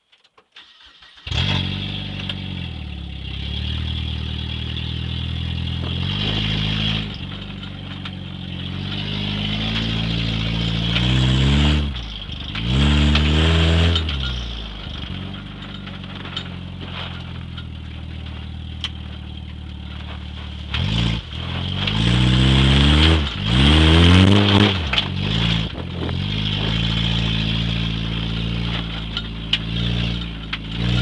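Car engine heard from inside the cabin of an enduro race car: it starts about a second in, then idles and is reved up and down several times as the car drives off.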